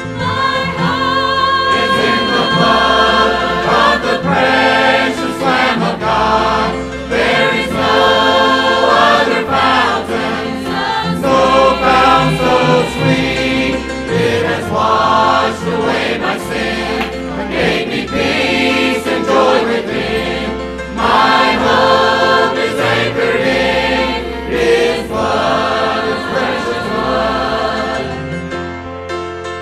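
Mixed church choir singing a gospel hymn with instrumental accompaniment, in sung phrases of a few seconds each.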